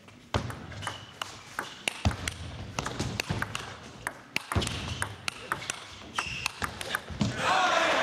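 Table tennis rally: the celluloid ball clicks off the paddles and the table in a quick, irregular series for about seven seconds. Near the end the point finishes and the crowd in the hall cheers and applauds, louder than the rally.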